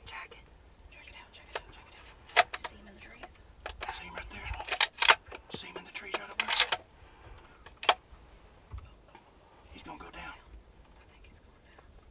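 Hushed whispering inside a hunting blind, broken by several sharp clicks and rattles of handled gear. The loudest clicks come about two, five and eight seconds in.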